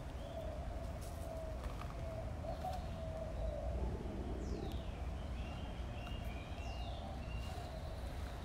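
Birds calling in the background: a wavering mid-pitched call that runs on, short chirps, and two falling whistles about four and a half and seven seconds in, over a low steady outdoor rumble.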